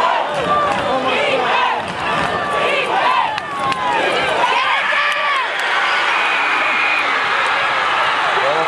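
Football crowd in the stands yelling and cheering, many voices overlapping at once. One long, steady high note sounds over the crowd about three-quarters of the way through.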